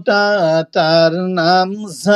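A man reciting Arabic letter syllables in a slow, sing-song chant: three drawn-out syllables, each held at a steady pitch, as in a Quran reading drill.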